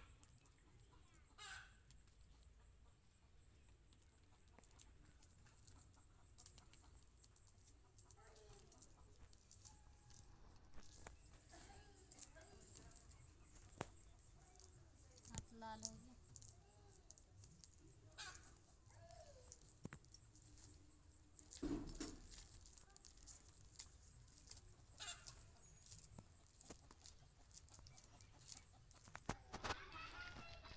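Near silence with faint chicken clucks now and then, over soft clicks of dried maize kernels being stripped from the cobs by hand. About two-thirds of the way through there is one louder knock.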